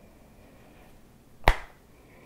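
A single sharp click about one and a half seconds in, over quiet room tone.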